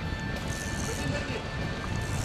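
Wind rumbling on the microphone, with faint background music.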